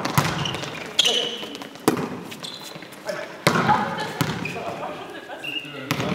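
Volleyball being struck during a rally: about three sharp smacks, roughly a second apart in the first half, each echoing in a large sports hall.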